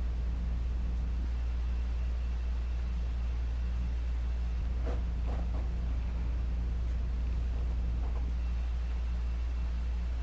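Steady low background hum at an even level, with a few faint, brief soft sounds around the middle and again later.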